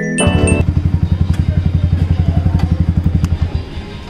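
Sport motorcycle's engine idling close by with an even beat of about a dozen pulses a second; it cuts off shortly before the end.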